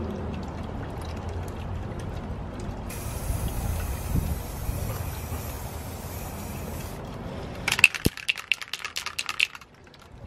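Aerosol spray can of white plastic primer hissing in a steady spray, strongest for about four seconds mid-way. Near the end comes a run of quick sharp clicks, the can's mixing ball rattling as it is shaken.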